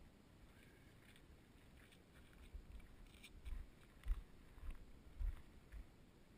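Bull shark thrashing in shallow water beside a concrete edge: a run of dull thumps and splashes over the second half, about six in all.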